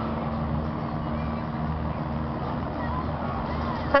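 Crowd chatter over a steady low engine hum as the Tecnotren railbus approaches, and its horn starts a short toot right at the very end.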